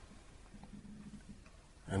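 Near silence in a pause between a man's spoken words: faint room tone, with his voice coming back in right at the end.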